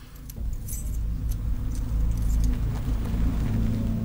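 A steady low rumble that comes in about a third of a second in and holds, like a car engine idling. Light metallic jingles sound over it a few times.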